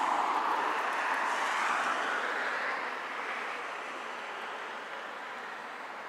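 Road traffic: a car passing, its tyre and engine noise loudest in the first couple of seconds, then fading away.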